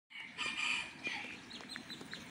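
Bird calls: one call lasting about a second, then a few short high chirps.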